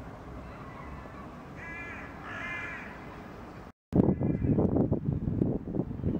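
A bird cawing twice, harsh and short, over a steady low street hum. After a brief cut in the sound, louder gusty wind noise buffets the microphone.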